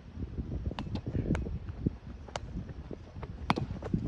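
Roundnet (Spikeball) rally: a string of short, sharp taps as the small rubber ball is hit by hand and bounces off the trampoline net, about six in four seconds. Low wind rumble on the microphone underneath.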